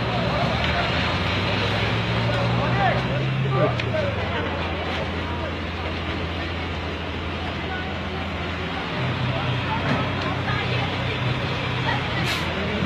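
Voices of a crowd of onlookers, with a vehicle engine running steadily underneath; the engine hum shifts pitch about four seconds in and again near nine seconds.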